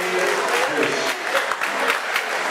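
Crowd applauding: many overlapping hand claps, with voices mixed in.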